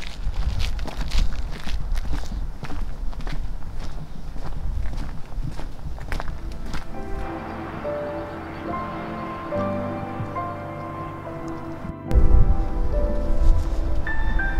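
Footsteps walking on a dirt trail, then background music that comes in about halfway with held, steady notes. A loud low rumble joins near the end.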